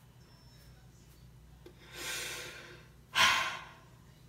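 A person sighing twice: a soft breath out about two seconds in, then a louder, sharper one about a second later.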